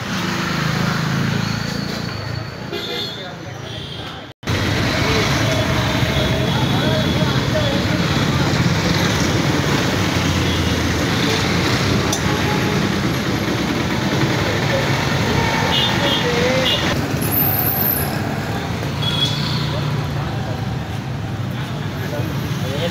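Busy street background: road traffic and people's voices talking around the shop, with a momentary cutout of the sound about four seconds in.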